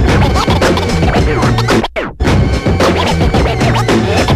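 Turntable scratching over a hip hop beat, a record pushed back and forth in quick sweeps up and down in pitch. The sound cuts out briefly just before halfway, then comes back.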